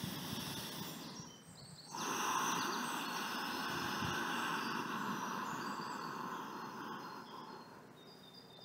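A long, audible breath out, starting suddenly about two seconds in and slowly fading over about five seconds, after a softer breath at the start. Faint bird chirps sound in the background.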